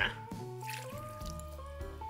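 Water poured from a small glass bowl into a saucepan of diced apricots and sugar, a brief splash about half a second in, over steady background music.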